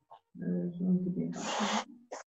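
A woman's voice holding a drawn-out, hum-like hesitation sound at a steady pitch for about a second and a half, with a breathy hiss over its last half second.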